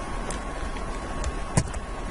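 A single sharp computer click about one and a half seconds in, over steady background hiss with a faint steady high tone.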